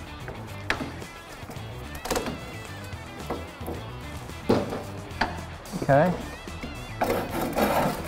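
Flat-bladed screwdriver scraping and prying old windscreen rubber out of a steel window channel, in scattered short scrapes and clicks. The rubber is so hardened and perished that it breaks out in crumbling pieces instead of cutting, over background music.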